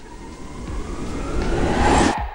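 A rising whoosh sound effect: a noisy swell with a climbing tone that grows steadily louder and cuts off abruptly at the end, a transition riser leading into a logo reveal.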